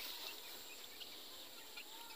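Faint outdoor background with a few scattered bird chirps.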